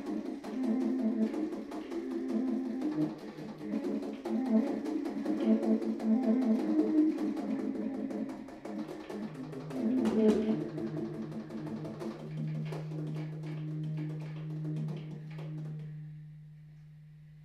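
Solo baritone saxophone playing fast runs of rapidly repeated notes, studded with sharp percussive clicks. About twelve seconds in it settles onto one long, low held note that fades out near the end.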